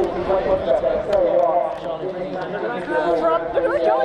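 Several spectators' voices talking over one another, with no other sound standing out.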